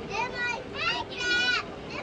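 High-pitched children's voices: a few short, excited cries and calls, rising and falling in pitch.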